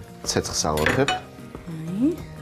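A few short, light clinks of a chef's knife against a wooden cutting board as a chicken breast is sliced, over background music with a singing voice.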